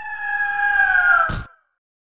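A bird-of-prey screech sound effect for the eagle logo: one long call, about a second and a half, sliding slowly down in pitch, with a short burst of noise near the end.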